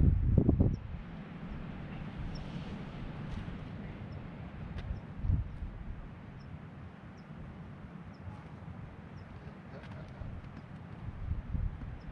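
Wind buffeting the microphone as an uneven low rumble, gusting hardest in the first second and again near the end. Faint, short, high chirps repeat about once a second over it.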